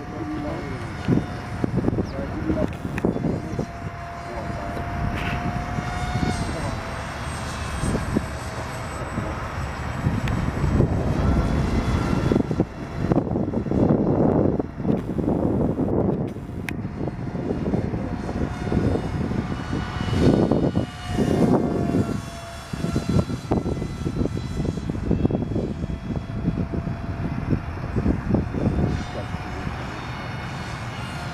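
A radio-controlled model airplane flying overhead, its motor a faint, steady distant whine. Irregular low rumbling gusts of noise come and go over it.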